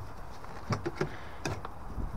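A few light clicks and knocks as a boiler's casing panel is handled, swung down and unhooked.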